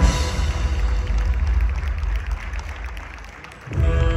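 Accompanying show music: a sudden loud low hit at the start, then a deep drum-like rumble that fades away over about three seconds. Just before the end a new, tense passage of long held tones comes in.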